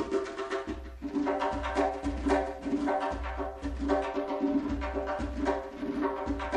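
Persian classical music in the Shushtari mode: a plucked string instrument playing quick, ringing notes over a low repeating pulse.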